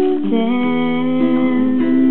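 Acoustic guitar played in a slow song, chords ringing between sung lines.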